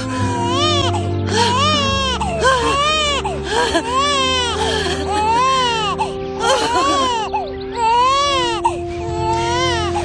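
Newborn baby crying, one rising-and-falling wail about every second, over soft background music with long held notes.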